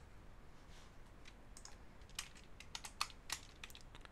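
Faint keystrokes on a computer keyboard: a short, uneven run of separate clicks as a word is typed, sparse at first and quickening in the second half.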